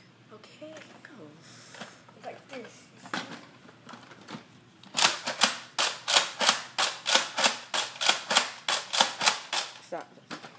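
Nerf N-Strike Elite Rampage pump-action blaster worked rapidly: a run of about twenty sharp plastic clacks, about four a second, starting halfway through and stopping just before the end.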